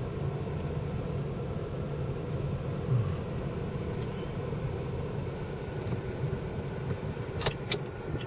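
Car cabin noise while driving slowly: a steady low rumble of engine and tyres, with a few sharp clicks near the end.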